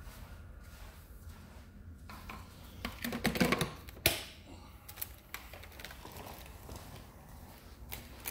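Quiet clicks and clatter, louder for a moment about three seconds in, followed by a single sharp knock about a second later, over a low steady hum.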